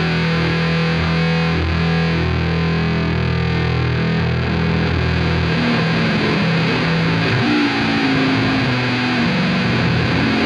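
Electric bass guitar solo played through distortion and effects. Low notes ring on for about the first five seconds, then a line of higher notes climbs upward near the end.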